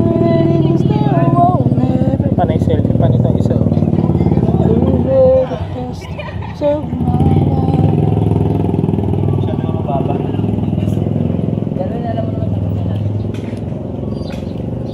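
A motorcycle engine running steadily at idle, with people's voices over it. The engine sound drops briefly a little past the middle, then comes back.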